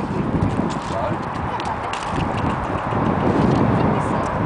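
Welsh Cob's hooves stepping on gravel in an irregular series of footfalls.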